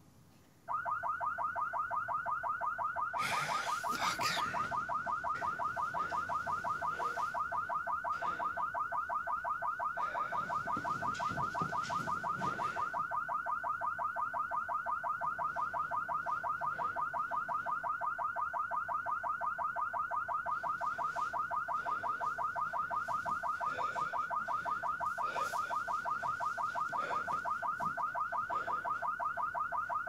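A car alarm starts suddenly about a second in and keeps going without a break, a fast, rapidly repeating electronic warble.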